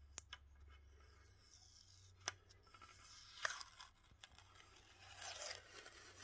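A yellow warning sticker being picked at with a fingernail and peeled off the aluminium power-supply casing of a Longer LK5 Pro 3D printer. It gives a few faint clicks, then a short tearing rasp about halfway through and a longer one near the end.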